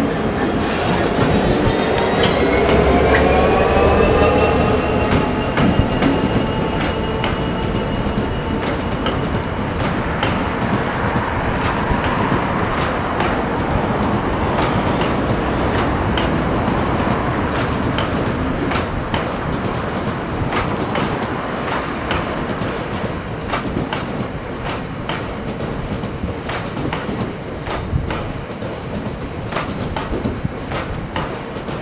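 Class 66 diesel freight locomotive's two-stroke V12 engine working hard as it passes, its note rising in pitch over the first few seconds, then giving way to the loaded open box wagons rolling by, their wheels clicking steadily over the rail joints.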